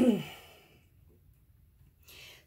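A woman's short voiced sigh, falling in pitch, right at the start.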